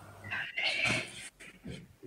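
A cat meowing: one drawn-out call lasting under a second, heard over a video-call connection.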